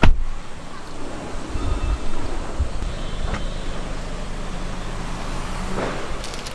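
Car door latch clicks open sharply, then steady street traffic noise, with a few low thumps and a faint click as someone climbs out and moves around the car.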